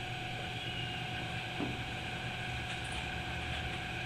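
Steady room background hum and hiss, with a faint constant tone and no distinct event.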